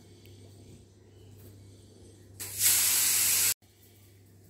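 A loud, steady hiss lasting about a second, starting a little over two seconds in and cutting off abruptly. Otherwise quiet room tone.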